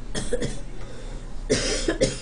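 A person coughing twice: a short cough just after the start, then a louder one about a second and a half in.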